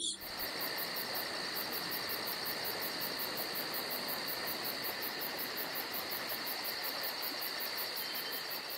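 Night chorus of crickets and other insects: a steady high trill with a higher chirp pulsing evenly above it, about four times a second.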